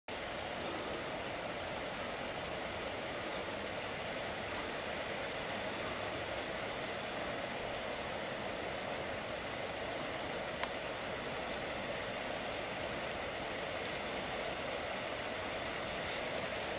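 Steady outdoor background noise, an even rushing sound with no distinct calls or voices, broken once by a short click about ten seconds in.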